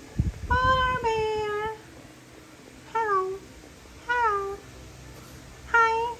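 French bulldog puppy whining: five high, falling whines, the first two long and run together, then three short ones about a second apart, with some low bumps under the first.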